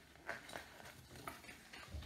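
Faint paper rustling and a few soft taps as the pages of a picture book are turned.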